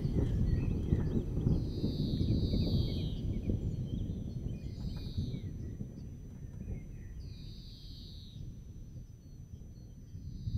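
Electronic music played live on hardware synthesizers and drum machines, now a beatless texture of low rumbling noise with high swishing sweeps every two to three seconds, fading out steadily as the jam ends.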